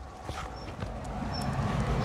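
Footsteps of people walking on a dusty paved track, over a low outdoor rumble that grows slightly louder.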